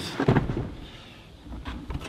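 Rear seat of a Toyota LandCruiser 80 Series being tipped forward: a rustling thump at the start, then a few short clicks from the seat's hinge and frame near the end.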